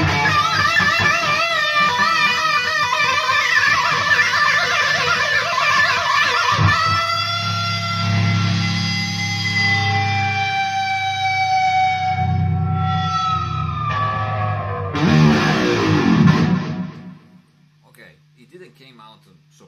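Distorted electric guitar with a whammy bar, played through an amp: fast hammered notes high on the neck, warbling under the bar, then long sustained notes bent slowly up and down, a short loud flurry, and a stop a little before the end. A steady low amp hum runs underneath.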